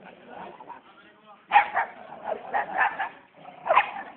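A dog barking: a quick run of five short barks about a second and a half in, then one more near the end.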